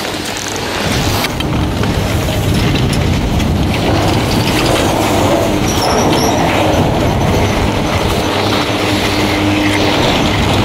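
High Noon Express high-speed detachable chairlift running at its bottom terminal: a steady mechanical rumble and clatter, growing louder about a second in.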